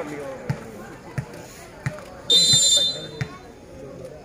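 Referee's whistle blown once, a short shrill steady tone lasting about half a second, a little past the middle. Before it come a few sharp thuds, evenly spaced, like a ball bouncing on the court, with faint voices around.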